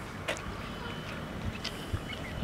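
Footsteps of people walking on a paved road: a few light scuffs and clicks over a steady low outdoor rumble.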